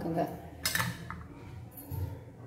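Metal idli steamer plates clattering and clinking as they are handled, with a sharp clatter about half a second in and a light metallic ring near the end.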